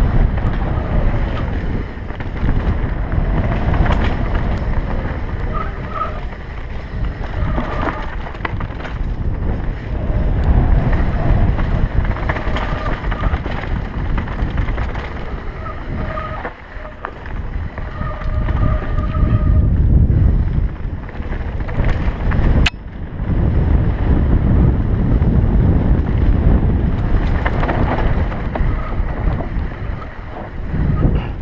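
Wind buffeting a helmet-mounted camera's microphone on a fast mountain-bike descent, with the tyres rumbling and the bike rattling over a rough dirt trail. A sharp knock comes about two-thirds of the way through.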